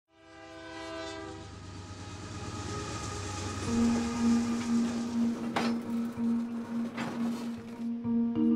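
Freight train passing: a horn chord sounds as it fades in and dies away after a second and a half. It gives way to the rising rush of passing railcars, with two sharp clacks of wheels over the rails. A steady low tone comes in about halfway through.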